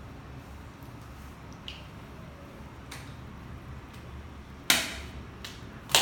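Two sharp slaps of bare hands, about a second apart near the end, after a few faint taps.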